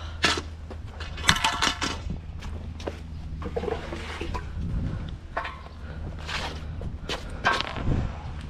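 Cast-iron manhole cover worked with a steel hook, clanking and scraping against its frame, with a rattling clatter about a second in and more clanks near the end, over the steady low hum of the sewer jetting truck's engine.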